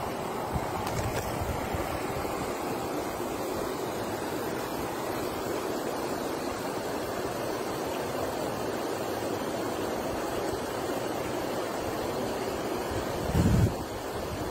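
Steady outdoor rushing noise with no voices. A brief low thump comes near the end.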